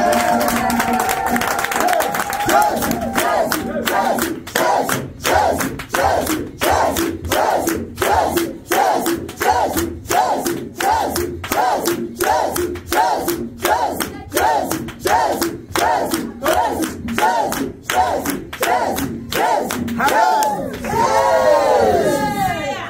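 A crowd of voices singing briefly, then chanting short shouted calls in a steady rhythm of about two a second. Near the end comes a longer call that falls in pitch.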